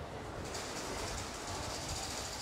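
Busy shopping-street ambience: a crowd of pedestrians, with a fast, high rattle setting in about half a second in.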